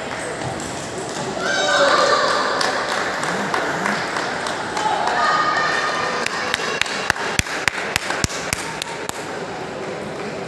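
Voices in a large hall, then a celluloid table tennis ball bounced over and over, light sharp clicks about three a second for roughly three seconds in the second half.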